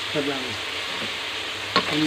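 Chicken, hot dog and carrot strips sizzling steadily in hot fat in a metal wok, with a wooden spatula clacking and scraping against the pan near the end as the stirring starts.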